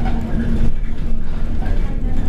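Alexander Dennis Enviro200 bus under way, heard from inside the cabin: a low engine and road rumble with a steady drivetrain whine over it.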